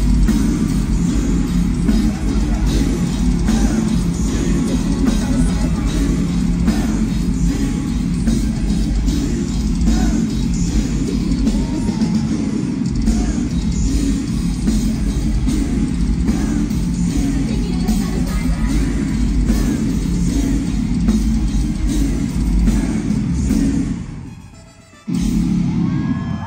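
A heavy metal band playing live through a concert PA, recorded from inside the crowd: loud and bass-heavy throughout. Near the end the music fades away, then loud music cuts straight back in.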